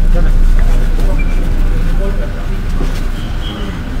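Indistinct chatter of a crowd over a heavy low rumble of microphone handling noise. A steady high tone comes in about three seconds in.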